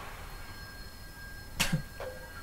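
A pause between spoken lines of narration: two faint, steady high-pitched tones are held underneath, and a short breath is heard about one and a half seconds in.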